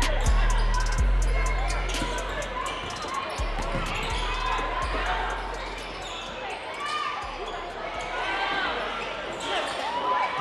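A basketball being dribbled on a hardwood gym floor, with short sneaker squeaks and crowd voices. The heavy bass of a rap track underlays the first half and fades out about halfway through.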